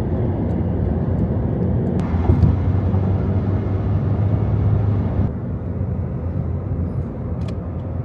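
Car driving at highway speed, heard from inside the cabin: a steady, loud low drone of engine and road noise. Its character changes abruptly about two seconds in and again about five seconds in.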